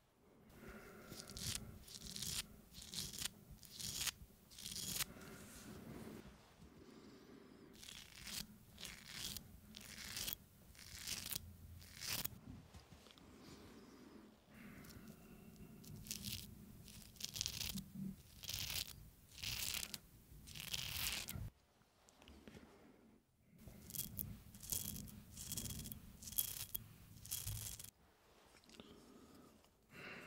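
Straight razor scraped in short strokes close to the microphone in a mock shave. The strokes come in quick irregular runs, with brief pauses between the runs.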